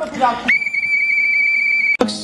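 A whistle blown in one long, steady, high-pitched blast, starting about half a second in and cut off abruptly at the end.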